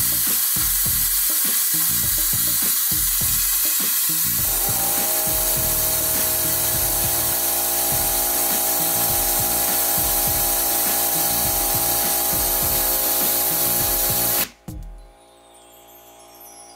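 Compressed-air blow gun hissing steadily as it blows on a fidget spinner to bring it up to speed, with a steady tone joining the hiss about four seconds in. The hiss cuts off abruptly near the end as the air is released.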